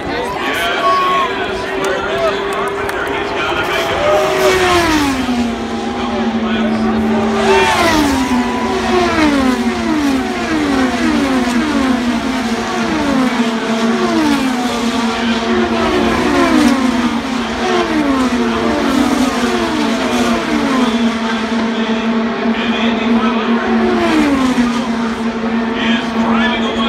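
IndyCars' 2.2-litre twin-turbo V6 engines passing one after another at racing speed, each engine note falling in pitch as the car goes by. One car passes about five seconds in, then a close-packed stream of cars follows from about eight seconds to near the end.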